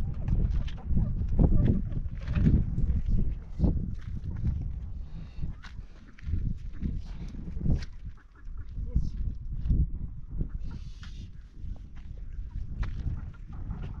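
Domestic chickens clucking and calling now and then, over a low, uneven rumble.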